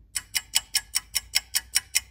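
Clock-like ticking sound effect, fast and even at about five sharp ticks a second.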